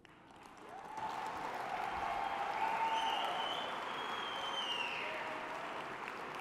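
Audience applauding, building up over the first second and then holding steady, with someone in the crowd calling out "yeah".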